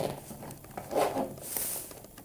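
Handling noise from a small black makeup bag being moved and set down on a table: soft rustling and bumps, with a short high scratchy sound near the end.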